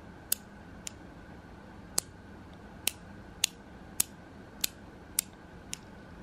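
Sliding fidget blocks on a black pocket pry bar snapping into place under tension: about nine sharp clicks at uneven spacing, roughly half a second to a second apart.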